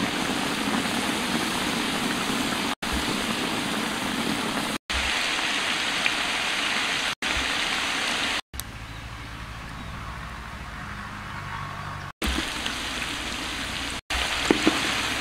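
Meat sizzling and bubbling in a wok: a steady hiss, broken off abruptly several times by edits between shots. A quieter stretch with a low hum runs from about two-thirds of the way through until near the end.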